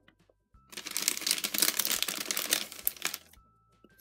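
Clear plastic bag crinkling as hands handle it and pull small embellishments out. The crackling starts about a second in, runs for a couple of seconds and dies away near the end.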